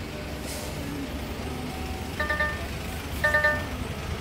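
DAF XF dashboard warning chime sounding in short multi-tone beeps about once a second from about halfway in, going with a "Brake light truck" warning on the display, which signals a brake-light fault. Under it the truck's diesel engine idles with a low steady hum heard inside the cab.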